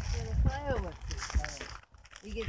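People's voices talking over a low rumble on the microphone; the sound cuts out briefly near the end.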